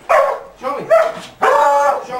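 A bed bug detection beagle barking three times in quick succession, short pitched barks, the last one a little drawn out.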